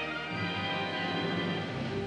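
Orchestral music with strings playing sustained notes: the skater's short-program music.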